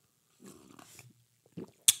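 A man drinking from a mug close to a microphone: faint sips and swallows, then a short, sharp noise near the end.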